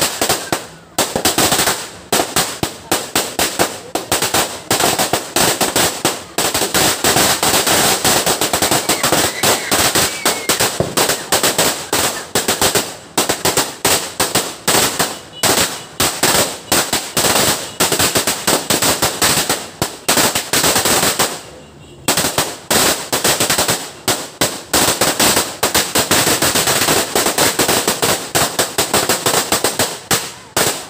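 A 500-round firecracker string going off: a rapid, continuous rattle of loud bangs that breaks off for about half a second two-thirds of the way through, then carries on.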